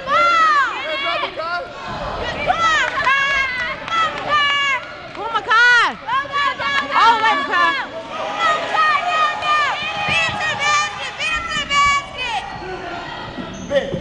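Basketball sneakers squeaking on a gym floor during play: a dense run of short, arching high-pitched squeals as the players start, stop and cut.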